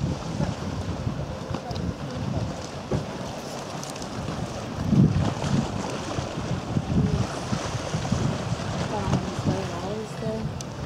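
Wind buffeting the camera microphone: an uneven low rumble with gusts, the strongest about halfway through.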